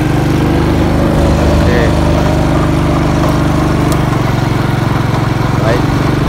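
Small motorbike engine running steadily while riding along a mountain road, its low hum holding one pitch.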